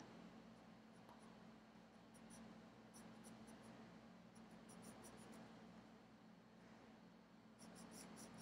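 Near silence, with faint scratching of a graphite pencil on smooth drawing paper in short, irregular strokes, over a low steady room hum.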